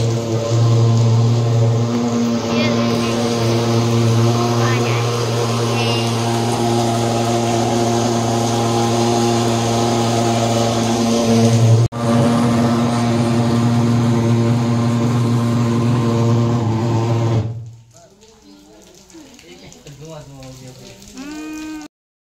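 Handheld thermal fogging machine spraying mosquito-control fog: a loud, steady buzzing drone that stops abruptly about seventeen seconds in.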